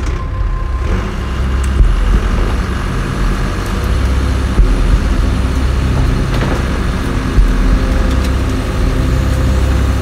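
Steady low engine rumble of heavy vehicles or machinery, with a few brief louder knocks.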